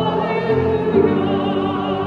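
Choir singing a hymn with grand piano accompaniment, the voices holding sustained chords that shift about half a second in.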